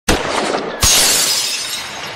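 Shattering sound effect: a sharp hit at the start, then a louder breaking crash just under a second in, with the scattering debris fading away.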